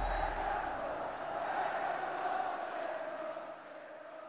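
Closing logo sting: the tail of a deep boom and a crowd-like roar, fading out gradually.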